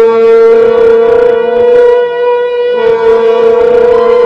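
Soundtrack music: a loud, single held note on a wind instrument, rich in overtones, that steps slightly lower in pitch about three seconds in.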